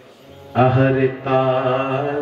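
A man singing a slow devotional kirtan line, holding long, steady notes. The voice comes in about half a second in after a brief hush.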